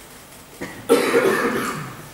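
A person coughing: a sudden loud burst about a second in that fades away within about a second.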